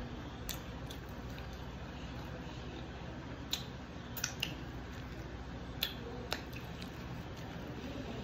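Sushi being chewed close to the microphone: a handful of sharp, wet mouth clicks and smacks, scattered irregularly over a steady low room hum.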